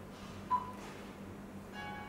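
Android car head unit giving a short touch beep about half a second in as the next-track button is pressed, then the next song starting quietly through its speaker near the end.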